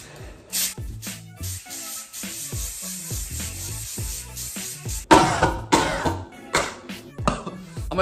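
Aerosol sneaker protector spray hissing in a long spray onto a sneaker, from about half a second in until about five seconds in. Then a loud cough or throat-clearing, typical of breathing in the potent spray fumes.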